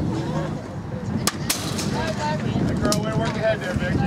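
A pitched softball smacking into the catcher's leather mitt, a sharp snap a little over a second in. Voices of players and spectators call out around it.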